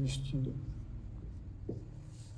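A marker scratching briefly on a whiteboard at the start, over a voice that trails off within the first half second, with another short vocal sound near the end.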